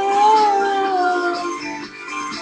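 A girl singing one long held note, with a slight waver, that slides down and fades about a second and a half in.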